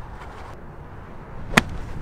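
A golf club striking a ball: one sharp crack about a second and a half in.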